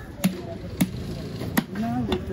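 A heavy knife chopping through a chunk of trevally into a wooden log chopping block, three sharp strikes spaced roughly half a second to a second apart.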